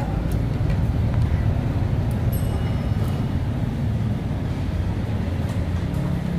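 Steady low rumble of electric ceiling and wall fans running in a dining room, with a few faint clicks of chopsticks against small ceramic bowls.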